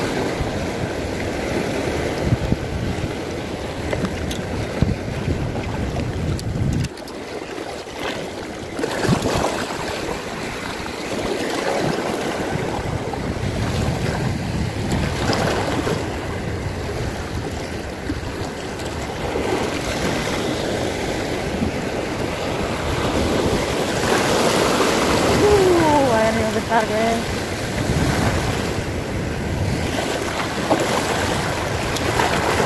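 Small sea waves washing over a concrete seawall and breakwater rocks, with wind rumbling on the microphone. A brief pitched, falling sound comes near the end.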